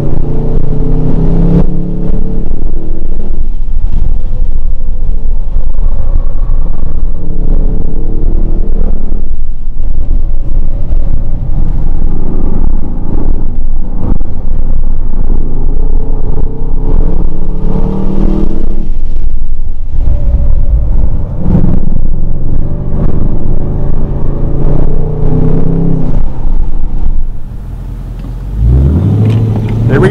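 Ford Mustang Dark Horse's Coyote V8 running hard on a race track, its note rising under throttle and falling back through shifts and lifts several times. Near the end it drops to a quieter note that rises as the car pulls away from near standstill.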